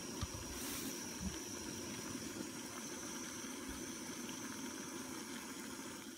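Lightweight screw-on canister gas stove burning steadily under a pot of water at a full boil, a constant burner hiss mixed with the bubbling of the water.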